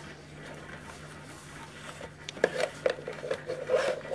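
Hands handling a plastic plug-in thermostat and its cables on a cloth surface: small irregular knocks and rubs, clustered in the second half.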